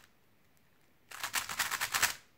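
GAN 356 XS magnetic 3x3 speedcube being turned fast. It is quiet for about the first second, then a quick run of plastic clicks and clacks sounds as the layers snap through turn after turn.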